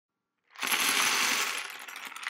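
A dense clatter of many small hard plastic pieces, like a handful of LEGO bricks being poured, starting suddenly about half a second in and tailing off toward the end.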